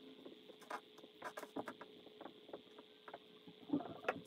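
Dry-erase marker writing on a whiteboard: faint, irregular short squeaks and taps of the pen strokes, over a steady faint room hum.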